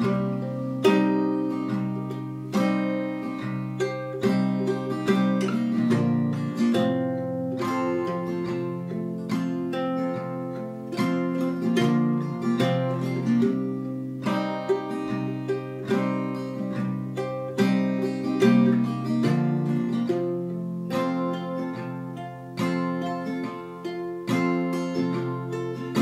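Two acoustic guitars, one of them a small nylon-string guitar, playing a folk song's instrumental intro in strummed and picked chords.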